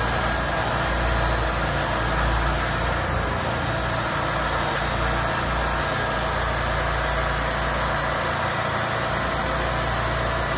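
Engine of a Wood-Mizer portable band sawmill running steadily at an even speed.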